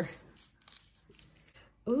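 Faint rustling and crinkling of a thin clear plastic protective film being peeled off and handled on a plastic keyboard.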